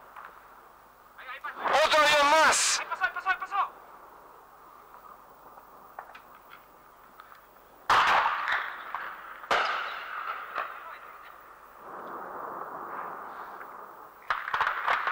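Explosions from an air raid on an airfield: a loud blast about eight seconds in that rolls away over a couple of seconds, and a second sharp report a second and a half later.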